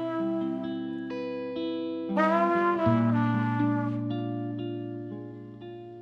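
Trumpet and guitar duet: guitar chords ring under a louder, bending held note about two seconds in, and the playing fades away toward the end.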